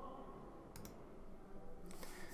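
Quiet room tone with a few faint, sharp clicks: a pair a little under a second in and another near the end.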